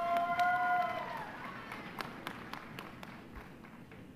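Audience clapping and cheering: one long whoop held for about a second, over scattered hand claps that thin out and fade.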